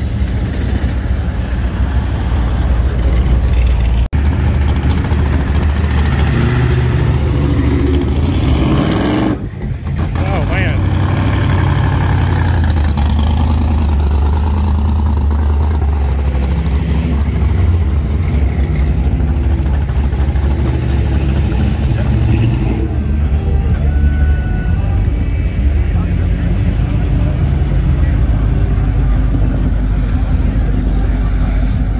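V8-powered hot rods and custom pickups rumbling at low speed as they cruise slowly past, with a short break about nine seconds in. Crowd voices are mixed in.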